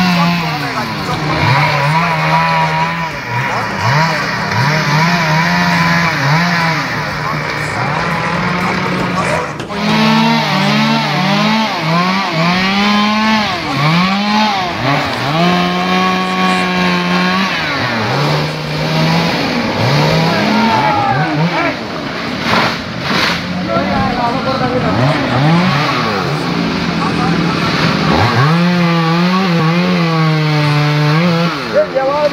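Chainsaw cutting felled trees, its engine revving up and dropping back over and over, with stretches held at a steady high pitch.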